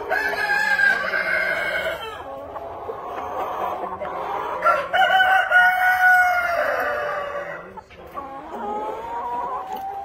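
Exhibition-type Rhode Island Red roosters crowing: one long crow at the start and another about five seconds in, with softer, shorter calls from the flock between them and near the end.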